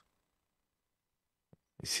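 A pause in speech: about a second and a half of silence, then a small click and a person's audible intake of breath just before speaking resumes.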